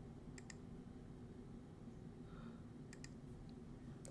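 Near silence: room tone with two faint double clicks, one about half a second in and one about three seconds in.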